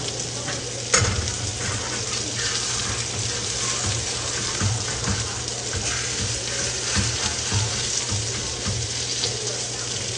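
Sausages sizzling steadily as they fry in a skillet, with a sharp click of metal tongs against the pan about a second in and a few softer knocks, over a steady low hum.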